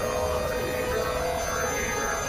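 Dense experimental electronic music: many held tones layered over a low rumble, with slowly gliding pitches among them.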